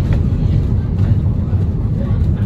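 Single-decker service bus driving along, heard from inside its cabin: a steady low engine and road rumble.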